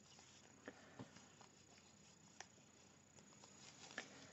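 Near silence with a few faint, scattered clicks of large knitting needles working stitches in chunky wool.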